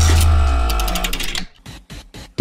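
Short musical transition sting: a deep bass boom under a held chord, with rapid stuttering clicks over it, fading out about a second and a half in.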